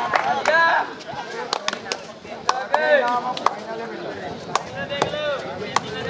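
Sharp, irregular claps and slaps during a kabaddi raid, several a second at times, with short shouted calls from players in between.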